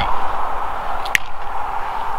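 Steady outdoor background noise with no clear event, and a brief hiss about a second in.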